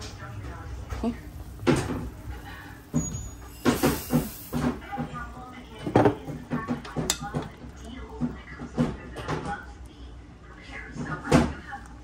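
Kitchen clatter: a string of sharp knocks and clunks from cookware and utensils at the stove, with quiet voices between them.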